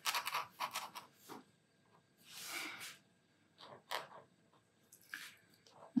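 White paint-marker nib scratching across mixed-media paper in short strokes, with one longer stroke in the middle; a scritchy, fingernails-on-the-blackboard kind of sound.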